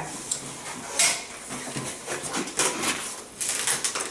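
Inflated long latex twisting balloons being handled and twisted, the latex rubbing and squeaking in a rapid run of short, sharp squeaks and scrapes.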